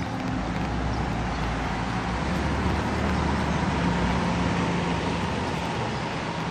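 Street traffic on a rain-wet road: a steady hiss of tyres with a low engine rumble underneath, a little louder in the middle.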